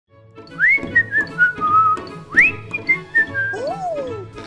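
Whistled tune over light background music with a steady beat: two phrases that each leap up and then step down in pitch, then a sliding whistle that rises and falls near the end.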